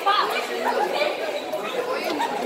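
Chatter of several young people talking over each other close to the phone.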